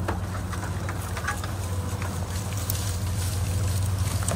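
A vehicle engine idling with a steady low hum, while bison walk past close by, their hooves making scattered clicks and rustles on dry grass.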